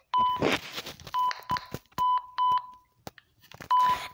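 Walkie-talkie key beeps as its buttons are pressed to change the channel: five short beeps all of one pitch, two of them close together near the middle, with clicks from the button presses and the radio being handled.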